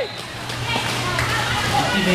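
A short laugh at the start, then a steady low hum under faint background voices and chatter in a large hall.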